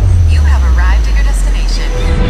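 Steady low drone of an aircraft cabin in flight, with a person's voice heard briefly in the middle.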